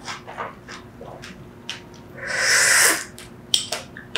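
Close-miked chewing of a mouthful of granadilla pulp, its hard seeds crunching in short sharp clicks. Just past halfway comes a loud breathy rush of air from the mouth lasting under a second, then a few more sharp clicks.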